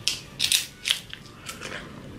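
Crisp rice cake bitten into and chewed, with a handful of sharp crunches over the first second and a half.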